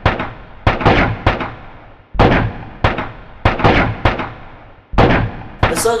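Battle gunfire sound effect: about a dozen sharp gunshot cracks at irregular spacing, some in quick runs, each dying away with an echoing tail.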